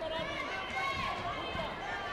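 Several voices calling out over one another in a sports hall during a taekwondo bout, with light thuds of fighters' feet moving on the foam mat.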